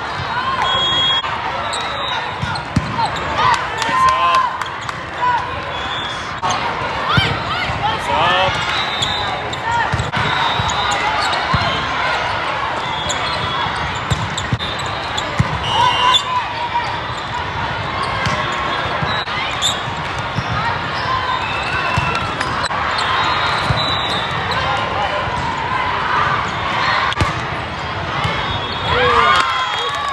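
Indoor volleyball play in a large hall: sharp ball hits and shoe squeaks on the court over a steady din of shouting players and spectators.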